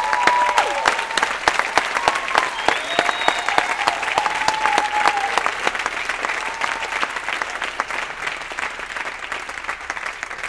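Theatre audience applauding, with whooping cheers in the first few seconds; the clapping starts loud and slowly dies down.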